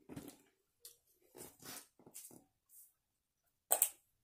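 Handling noises as handbags are moved about: a few faint rustles and soft knocks, then one short, louder clatter near the end.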